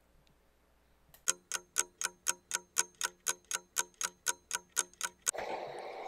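Clock ticking sound effect marking time passing: a run of sharp, evenly spaced ticks, about four a second, starting about a second in and stopping after about four seconds. A steady hiss comes in near the end.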